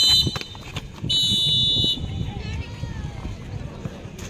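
A referee's whistle blown twice: a short blast at the very start, then a louder, steady blast about a second in that lasts almost a second.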